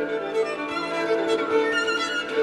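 Solo violin playing a line that slides downward in pitch over held sustained notes, from a violin concerto recording.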